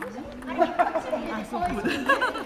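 Several people's voices chattering and talking over one another, with a few short sharp clicks among them.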